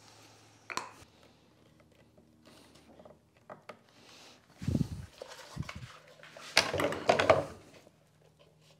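Metal bar clamps and their plastic jaws being handled and set around a small glued-up mitred wooden box on a workbench: scattered knocks and clatter of clamp parts against wood, with the loudest burst of handling noise about two-thirds of the way through.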